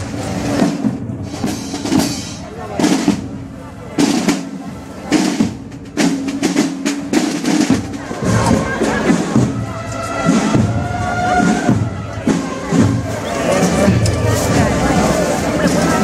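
A marching band's snare and bass drums beating a march in sharp, regular strokes. About halfway through, held notes from wind instruments join the drumming.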